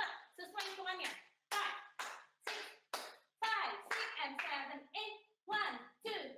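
A woman's voice calling out the rhythm of dance steps in short, evenly spaced syllables, about two a second.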